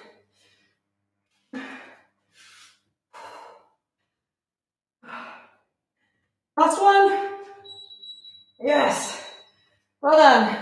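A woman breathing hard and sighing after exertion: several short breathy exhales, then two louder voiced sighs or gasps in the second half.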